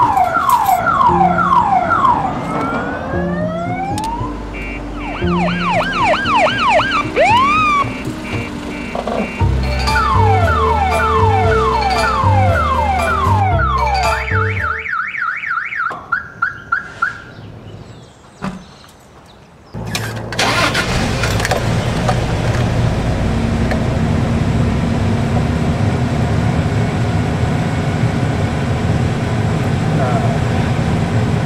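Car alarm siren cycling through several patterns of rising and falling whoops and warbles, with a low pulsing under it for a few seconds, ending in a steady tone that stops about halfway through. After a few quiet seconds comes the steady low rumble of a car engine running, heard from inside the car.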